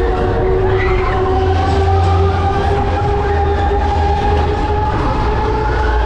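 Break Dance fairground ride running, heard from a rider's seat: a steady mechanical whine that slowly rises in pitch over a low rumble.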